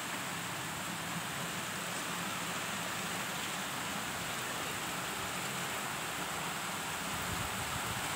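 Steady hiss of heavy rain and tyres on a flooded road, heard from inside a moving car.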